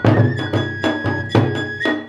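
Kagura music: a taiko drum struck about every half second or so, each beat with a low ringing body, under a high bamboo flute holding long notes that step up in pitch near the end.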